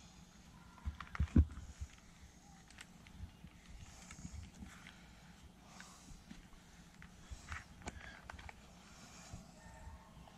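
Faint sounds of a trigger spray bottle misting waterless wash cleaner onto a fiberglass RV side and a microfiber cloth wiping it, with a few sharp clicks about a second in and a few soft short hisses later.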